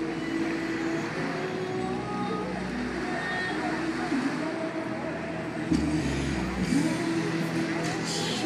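Busy outdoor ambience of road traffic running, with voices of people in the crowd. A louder rush of sound with deep rumble comes about six seconds in.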